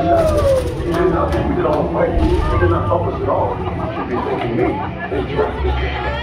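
Several voices talking and calling out over a steady low rumble, with a long sliding vocal sound right at the start.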